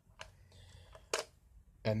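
Two light, sharp clicks about a second apart from hands handling the toy and camera, then a man's voice near the end.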